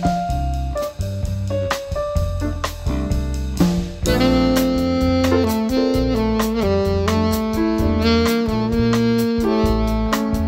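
Instrumental jazz bossa nova break: a bass line, drums with light cymbal strokes and piano chords, joined about four seconds in by a saxophone playing long held melody notes.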